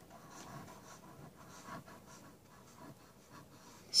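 Sharpie marker tip scratching on a cardboard box as it draws a weave pattern in short, irregular back-and-forth strokes; faint.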